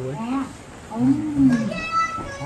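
Wordless vocalizing from a young man who cannot speak: drawn-out voiced sounds that rise and fall in pitch, with a short lull before the longest one about a second in.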